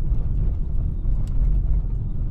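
Steady low rumble of a car driving on a wet, slushy road, heard from inside the cabin through a dashcam microphone, with faint scattered ticks above it.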